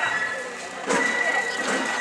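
Street festival procession around a hayashi float: a steady high-pitched tone held throughout over the voices of the crowd, with a sharp knock and a rise in loudness about a second in.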